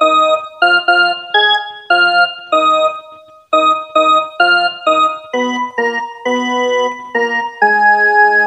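Casio electronic keyboard playing a slow melody one note at a time, each key struck singly and left to fade, with a short break about three seconds in.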